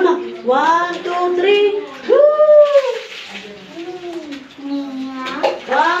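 A small child's high-pitched, drawn-out wordless calls and whines in a small tiled bathroom, with water splashing from a dipper for about a second in the middle.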